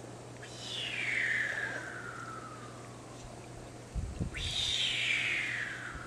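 A bird singing two long descending phrases, each about two seconds, sliding from a high pitch down to a lower one; the first comes about half a second in, the second just after four seconds in. A few soft low bumps come just before the second phrase.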